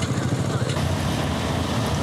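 Vintage cyclecar engine running steadily, with a rapid, even beat of firing pulses.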